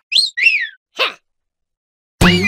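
Cartoon larva character whistling two quick notes through pursed lips, the first rising, the second rising then falling, followed by a short vocal sound about a second in.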